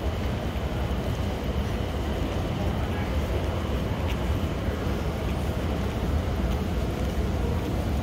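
Steady low rumbling background noise of a large, hard-floored hall, with nothing distinct standing out.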